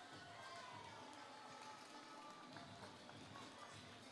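Near silence: faint, distant event-hall background with faint voices.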